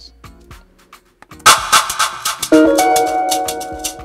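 Beat playback: after a faint start, drums and percussion come in about a second and a half in, and a second later a held chord from an 'electric jazz' String Studio patch joins them.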